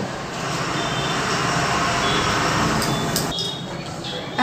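A passing road vehicle: a rushing noise that builds over about two seconds, then drops away about three seconds in.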